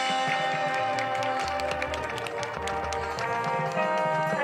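Marching band playing: brass holding chords over a run of sharp percussion strikes, with low bass-drum hits through the middle.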